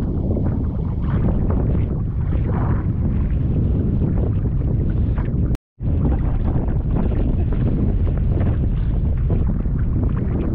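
Wind buffeting the camera microphone out on open sea, a loud, steady low rumble with some wash of the water under it. The sound drops out completely for a moment a little past halfway, then resumes unchanged.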